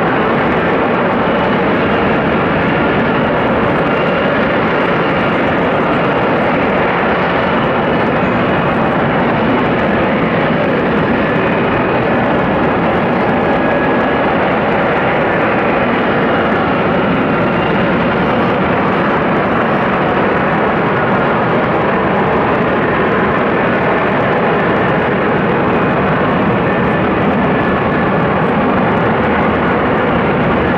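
F-35B Lightning II hovering in vertical-lift mode, its jet engine and lift fan making a loud, steady noise with faint whining tones over it.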